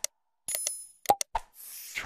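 Subscribe-button animation sound effects: short sharp mouse clicks, a bright bell-like ding about half a second in, two more clicks, then a brief whoosh near the end.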